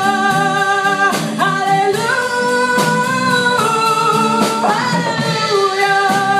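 Live band performance: a woman singing long held notes into a microphone over acoustic guitar and drums, with drum strikes every second or so.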